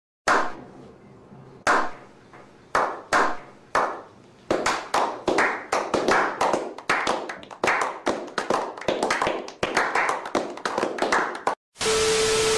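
A few men doing a slow clap: single hand claps about a second apart at first, quickening into steady applause that stops suddenly near the end.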